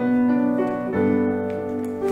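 Piano accompaniment playing held chords, a new chord struck about once a second.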